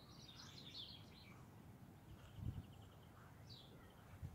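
Near silence with faint bird chirps in the background, including a short run of quick repeated high notes, and a soft low knock about halfway through.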